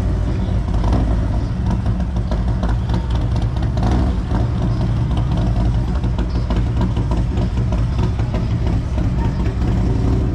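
Road traffic at a city intersection: the engines of a touring motorcycle and passing cars running, a steady low rumble with faint clatter on top.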